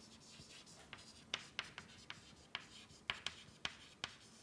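Chalk writing on a blackboard: about a dozen short, sharp taps and scratches at an irregular pace as letters are written.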